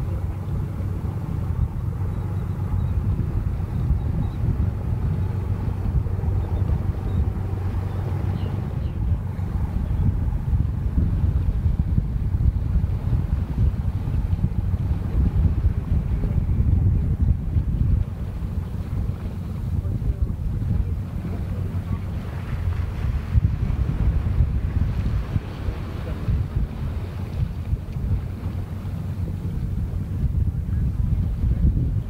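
Wind buffeting the microphone: a loud, gusty low rumble throughout, with a faint steady low hum under it during the first third.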